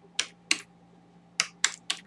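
Computer keyboard keys being typed: five separate keystrokes, two in the first half-second and then three in quick succession near the end.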